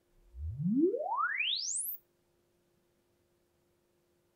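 Sine-sweep test tone of a room-acoustics measurement, played through hi-fi loudspeakers: one pure tone gliding from a deep hum up to a very high whistle in under two seconds, then cutting off. It is the excitation signal used to measure the room's impulse and frequency response for digital room correction.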